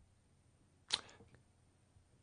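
Silence in a pause between speech, broken by one short click about a second in, followed by a few faint ticks.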